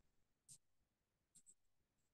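Near silence: room tone with a few faint short ticks, one about half a second in and two close together near the end.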